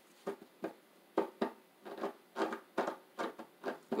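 A deck of tarot cards being shuffled by hand: a run of soft, irregular card slaps and flicks, roughly three a second.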